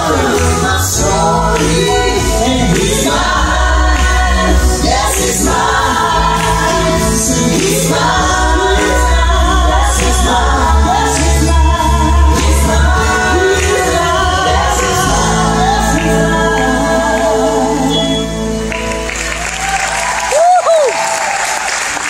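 Female gospel vocal group singing in harmony with keyboard accompaniment, the song ending about 18 seconds in. Audience applause follows.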